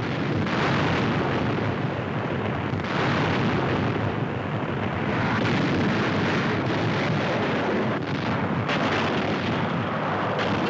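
Bombing sound effects on an old newsreel soundtrack: a dense, continuous rumbling roar of explosions, with several sharper blasts standing out from it.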